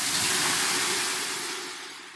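Ladleful of water thrown onto hot sauna-stove stones, hissing into steam. The hiss starts suddenly at full strength and fades away over the next couple of seconds.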